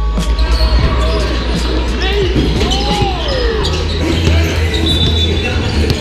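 A basketball bouncing on an indoor court amid players' voices and music, all ringing in a large sports hall.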